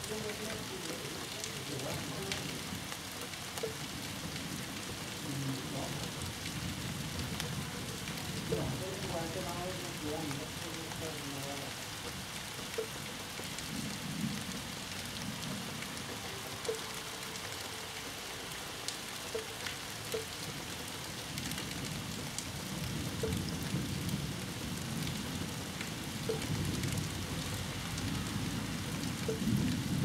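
Steady rain during a thunderstorm, an even hiss, with low rumbles of thunder swelling now and then, most in the second half.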